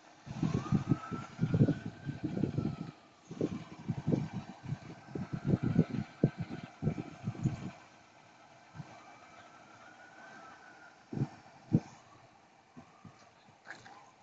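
A faint emergency-vehicle siren wailing slowly up and down twice in the background, under loud, irregular low buffeting on the microphone for the first seven seconds or so. Two short thumps come near the end.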